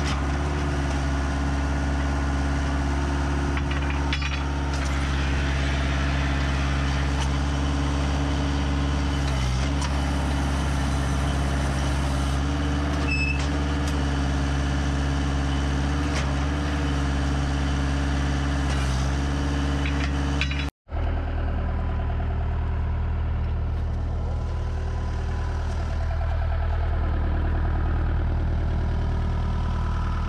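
Ditch Witch JT922 directional drill's diesel engine running loud and steady. It drops out for an instant about two-thirds of the way through, then carries on with a slightly different tone.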